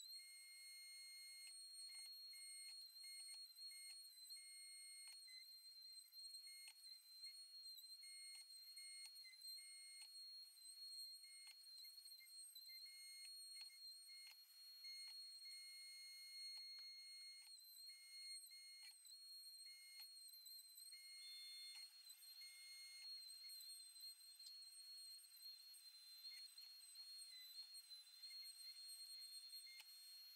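Near silence with a faint, steady high-pitched tone.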